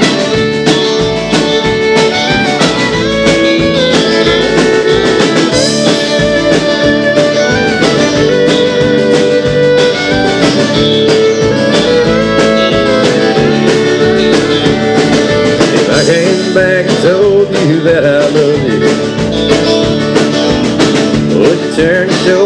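Live country band playing a song's instrumental intro. An electric lead guitar plays over strummed acoustic guitar and bass, with a steady drum beat.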